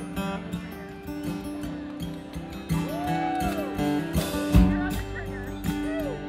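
A country band starting a song live: acoustic guitar strumming, a fiddle sliding up and back down about three seconds in, and bass and drums coming in heavily about four and a half seconds in.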